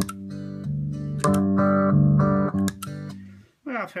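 Amplified guitar playing picked chords and notes through a Mooer auto-wah pedal switched to its bypass, a mode the player says drops the volume and is not true bypass. The playing gets louder about a second in and fades out shortly before the end.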